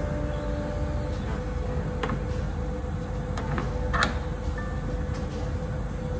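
Screen printing on a print bed: a squeegee worked across the silkscreen and the screen frame clacking as it is handled and lifted, a few sharp knocks with the loudest about four seconds in, over a steady machine hum.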